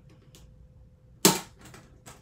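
A lunchbox latch snaps open with one loud, sharp click about a second and a quarter in, after a few faint small clicks.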